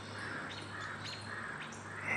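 Quiet outdoor background with faint bird chirps.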